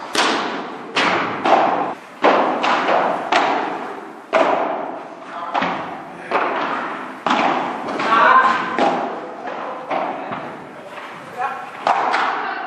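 Padel rally: the ball is struck by padel rackets and bounces off the court and glass walls, a string of sharp pops about one to two a second, each echoing in the large hall.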